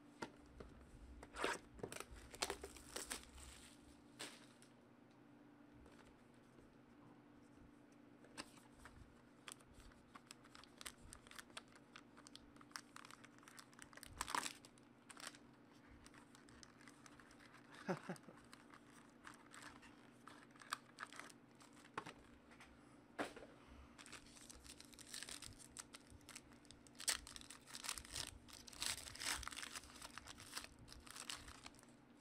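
Foil wrapper of a trading-card pack being handled and torn open: faint crinkling and tearing with scattered small clicks, thickest in the last few seconds.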